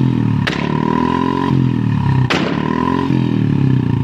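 Royal Enfield Bullet's single-cylinder engine revving, with two loud exhaust backfire bangs about half a second and just over two seconds in. The bangs are set off by flicking the red kill switch off and on with the throttle held open.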